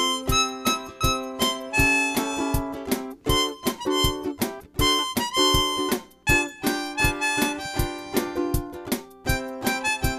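A blues harmonica solo played over a strummed Boulder Creek Riptide electric ukulele, with a steady drum beat from a Boss RC50 loop station beneath, about two hits a second.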